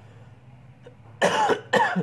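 A man coughing twice in quick succession, a little over a second in.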